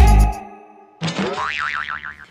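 Background dance music with a heavy beat fades out in the first half second. About a second in comes a springy cartoon 'boing' sound effect, its pitch wobbling quickly up and down.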